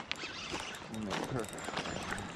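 Fishing reel clicking as line is wound in on a hooked coho salmon, with a sharp click at the start and a faint murmur of voice about a second in.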